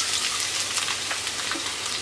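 Sliced onions sizzling in hot oil in a frying pan, a steady, dense crackle just after they go in.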